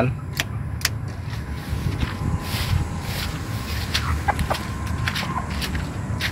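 The headlight knob on a Toyota Kijang's steering-column combination switch clicks twice as it is turned to switch the headlights on, over a steady low rumble.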